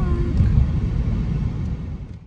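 Steady low rumble of road and engine noise inside a moving car's cabin, dying away near the end.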